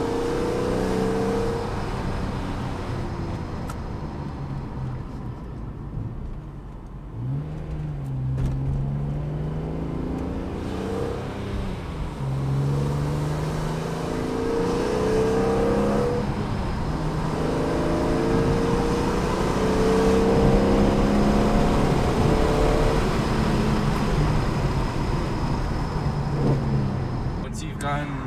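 Car engine heard from inside the cabin, its revs climbing in pitch several times and dropping back between climbs as the car speeds up and slows again. These are the repeated speed-up-and-brake runs of bedding in new brake pads.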